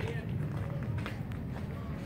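Indistinct chatter of spectators and players over a steady low outdoor rumble, with a few faint clicks.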